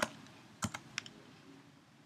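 A few computer keyboard keystrokes in the first second, the strongest about two thirds of a second in: the final key press, Enter, that runs a typed terminal command. Then only faint room hiss.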